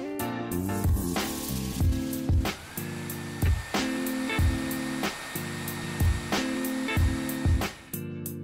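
Hair dryer blowing from about a second in, its motor whine rising and then holding steady, over background music with a regular beat.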